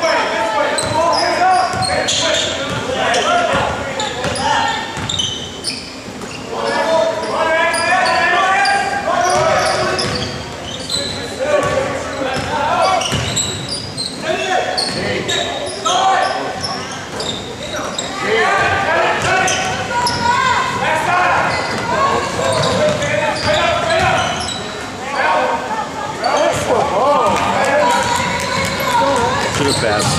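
A basketball being dribbled on a hardwood gym floor during play, with indistinct voices of players and spectators throughout.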